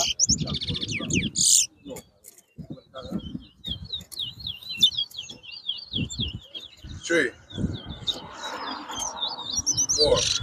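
Caged male towa-towa (chestnut-bellied seed finch) singing in competition: a fast, warbling twitter of quick rising and falling notes that goes on almost without a break, with a denser burst near the start. Low handling knocks and rustle sound underneath.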